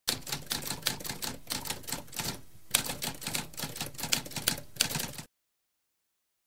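Typewriter keys clacking in a fast run, with a brief pause about halfway through, stopping abruptly a little over five seconds in.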